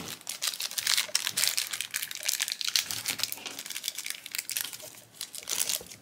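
Foil blind-bag wrapper being crinkled and torn open by hand, a dense run of crackles that stops just before the end.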